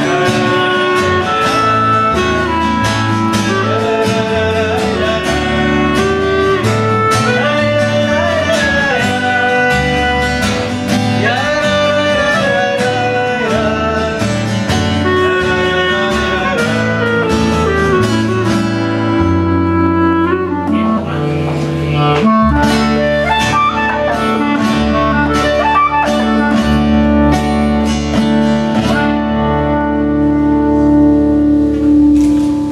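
Instrumental passage: two acoustic guitars strumming chords under a woodwind playing the melody in held and sliding notes. The strumming thins out for a moment about two-thirds of the way through, then comes back.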